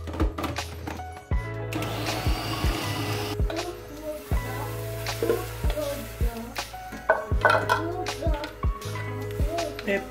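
Background music with a steady beat and a melodic line. About two seconds in, an Arnica Prokit 444 food processor runs briefly for about a second and a half, a rising whine, then stops.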